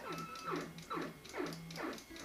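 8-bit video game sound: a pulsing bass note under five quick falling sweeps, a little under half a second apart.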